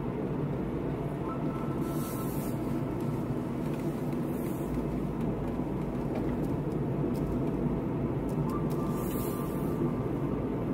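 Steady drone of a car driving along, engine and tyre noise heard from inside the cabin.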